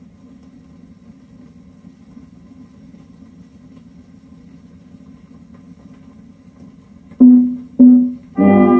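Surface noise from an acoustic-era Victor 78 rpm shellac disc playing on a turntable through a near-silent gap in the music. Near the end, two short, loud notes a little over half a second apart come in as the music resumes.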